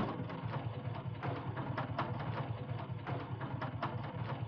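A taxi's engine running, a steady low hum with irregular rattling clicks several times a second.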